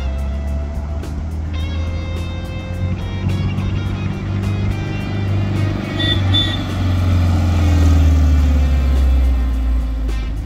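The air-cooled 1641 cc flat-four engine of a 1973 Volkswagen Super Beetle running as the car drives, its low rumble growing louder in the second half, with background music over it.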